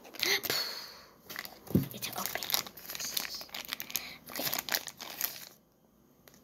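Thin plastic toy packet crinkling and tearing as it is handled and opened, in a run of crackles, with a single knock about two seconds in; it goes quiet shortly before the end.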